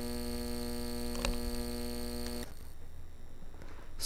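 Steady electrical hum with a buzzy stack of overtones, picked up on the recording line, with a faint click a little over a second in. The buzz cuts off about two and a half seconds in, leaving a low hiss.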